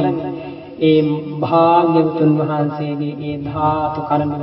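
A man's voice chanting in a slow, drawn-out melody, typical of Buddhist chanting. The notes are held long over a steady low drone, with a short dip in the voice just before the first second.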